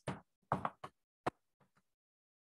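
Chalk knocking and tapping on a blackboard as a formula is written: a few short taps in the first half, the sharpest a little past the middle.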